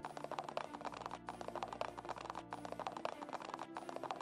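Rapid running footsteps as a sound effect, a quick clatter of many steps per second. They come in stretches of about a second with short breaks, over low steady tones.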